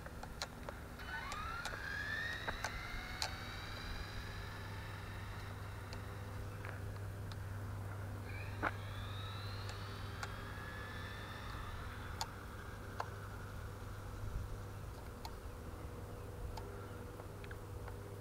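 Traxxas Slash 4x4 RC truck's Castle 2200Kv brushless motor, on a Mamba Monster 2 ESC and 6S, whining as the truck accelerates away down the road. It happens twice, each whine rising steeply in pitch, then levelling off and fading.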